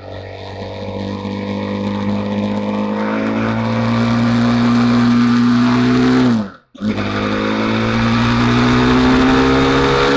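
BMW G310R's single-cylinder engine pulling under steady acceleration, its pitch climbing slowly, with wind and road noise around it. About six and a half seconds in, the sound cuts out for a moment, and the engine comes back lower in pitch and climbs again.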